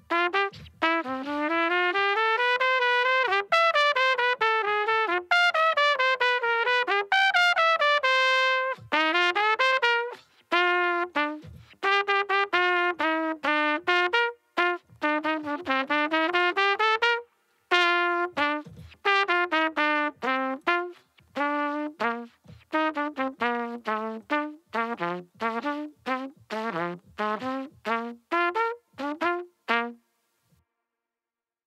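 Unaccompanied trumpet playing a lively soca melody: quick rising and falling runs, a held note about eight seconds in, then a brief pause and a run of short, detached notes. The last note comes right at the end.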